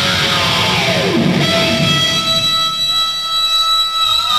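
Heavy metal band playing live: distorted electric guitars with bass and drums, and a note sliding down in pitch about a second in. Then the bass and drums drop away and held electric guitar notes ring on steadily.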